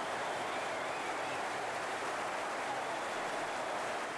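Football stadium crowd cheering after a goal, a steady wall of crowd noise.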